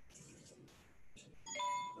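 A short bell-like electronic chime, several tones sounding together, lasting about half a second near the end.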